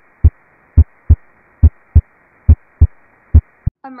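A human heart beating as lub-dub pairs: S1 as the atrioventricular valves close, then S2 as the semilunar valves close about a third of a second later. The pairs repeat at about seventy beats a minute over a faint hiss, and stop shortly before the end.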